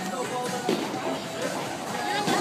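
Indistinct voices talking over background music, with no ball or pin sounds.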